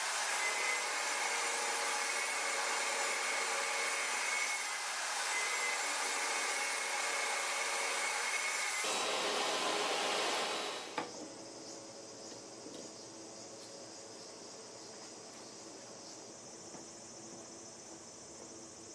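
Table saw blade ripping a thin strip of wood: a loud, steady cutting noise for about ten seconds that falls away, then a single click and only a faint steady hiss.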